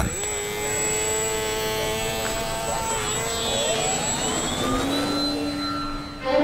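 Radio-controlled model airplane's motor and propeller running with a steady tone, then rising in pitch from about three and a half seconds in as the plane takes off.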